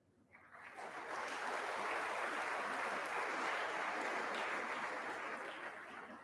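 Audience applause in a large hall, swelling within the first second, holding steady, then starting to fade near the end.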